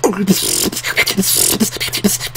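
A woman beatboxing: a fast run of mouth-made drum hits with short pitched vocal sounds woven between them.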